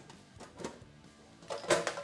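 Fender tin lunch box being handled open, its metal lid and the items inside clinking and rattling, with a few light clicks and then a louder cluster of clatter about a second and a half in.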